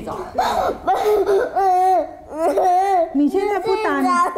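A young girl crying and wailing in distress, with long high-pitched wavering cries, afraid of being given an anesthesia injection. A woman speaks to her in Mandarin over the crying.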